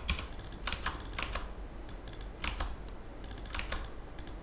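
Typing on a computer keyboard: irregular runs of keystrokes with short pauses as a line of code is entered.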